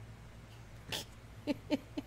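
A woman's short, stifled laugh: a breathy puff about a second in, then a quick run of voiced "ha" pulses, about four a second, in the second half. A low steady hum runs underneath.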